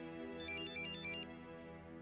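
Mobile phone ringtone: a quick phrase of high, stepped electronic notes about half a second in, from an incoming call left unanswered. Soft sustained background music underneath fades toward the end.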